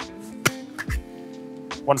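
Background music with a steady beat, and a man starting to speak near the end.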